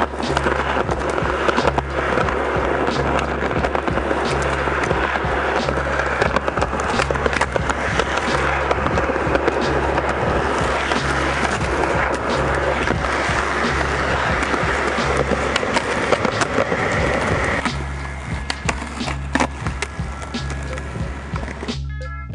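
Skateboard wheels rolling over rough concrete, with sharp clacks from pops and landings, under background music with a repeating bass line. The rolling noise dies away near the end, leaving the music.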